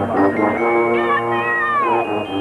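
High school marching band holding sustained chords, with a high note that slides steeply down in pitch through the second half.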